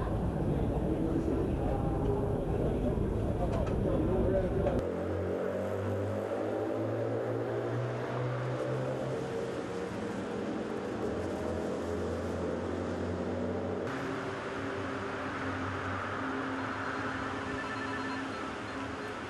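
Background chatter of many people over a steady, low vehicle-engine hum, in natural-sound news footage. The background changes abruptly twice, about five seconds in and again near fourteen seconds.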